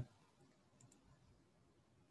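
Near silence: room tone, with two faint clicks a little under a second in.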